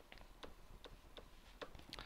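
Faint, irregularly spaced light clicks of a stylus pen touching down on a tablet screen during handwriting, several a second.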